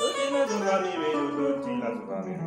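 Stratocaster-style electric guitar playing a run of single notes from a D major scale shape, starting with a sharp pick attack and moving note to note every few tenths of a second.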